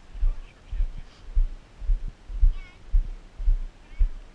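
Footsteps on a wooden boardwalk: a steady walking rhythm of low thuds, a little under two a second, picked up through the moving camera.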